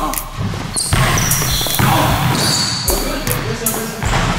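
Basketball being dribbled on an indoor court's plastic sport-tile floor, with several short high squeaks during the play.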